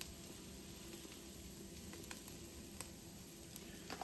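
Faint sizzle of ground beef frying in its own fat in a Dutch oven, with a few light ticks as chili powder is shaken from a spice jar.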